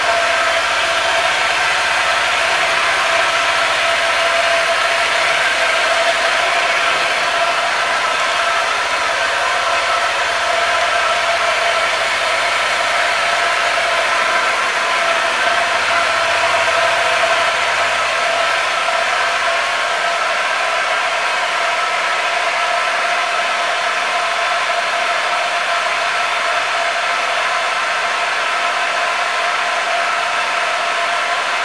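A steady mechanical whirr holding one constant pitch over a broad hiss, with no change in speed or level.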